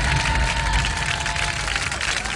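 Large studio audience applauding, a dense steady clapping with some cheering.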